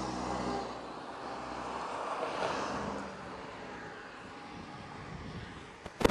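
Road traffic: a passing vehicle's noise, loudest at first, swelling briefly again and fading away by about three seconds in, leaving a low steady street hum.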